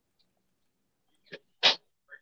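Near silence, then about one and a half seconds in a faint short noise followed by a single short, sharp burst of breath from a person close to the microphone, like a sneeze-like exhale.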